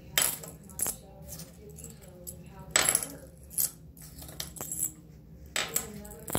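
A metal dog tag and its chain dropped and dangled onto a hard counter surface, clinking and rattling several times, loudest about three seconds in.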